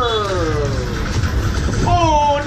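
A Thai match commentator's long, drawn-out falling exclamation, over a steady low rumble. Another burst of commentary starts near the end.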